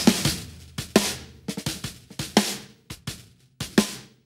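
A recorded, close-miked snare drum playing back in an uneven groove, about a dozen hits with the snare wires buzzing after each stroke. A transient shaper is boosting its sustain so the snare wires ring on longer.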